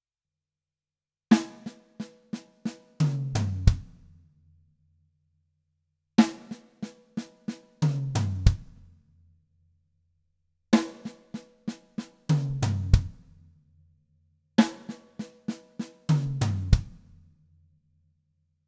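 Drum kit playing a six-stroke-roll lick slowly, four times over: an accented snare stroke and four more snare strokes, then one stroke on the rack tom and one on the floor tom, ending on a bass drum note. Each time the notes step down in pitch and the toms ring on briefly before a pause.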